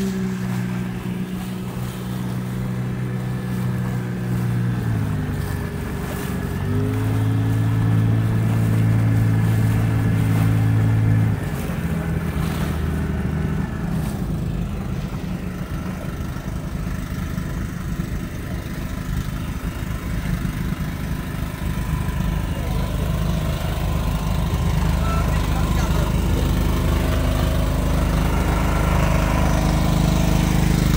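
Fishing boat's engine running with a steady drone; about five seconds in it drops in pitch, then comes back higher about two seconds later and holds until about eleven seconds in, after which the steady tone gives way to a rougher, lower rumble.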